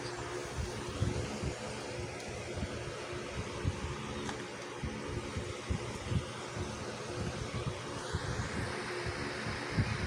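Steady mechanical hum with a rushing noise, like a running fan, broken by scattered soft low bumps.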